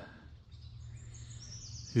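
A bird calling: a short run of thin, high notes stepping slightly downward, about a second in, over a faint steady outdoor background noise.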